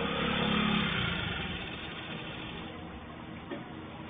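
Small motorcycle engine running close by, loudest in the first second and then fading as it pulls away. Heard through a CCTV camera's microphone.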